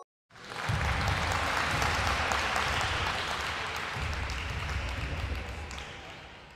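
Crowd applause: a dense, even clapping that starts a moment in, holds steady, and begins to fade near the end.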